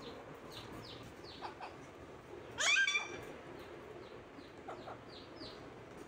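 Pet parakeets calling: short high chirps scattered throughout, and one louder, half-second squawk about two and a half seconds in.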